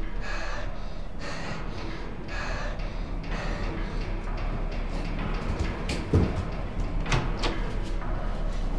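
A girl breathing audibly, about one breath a second, then a thud about six seconds in and a click of a door handle being handled.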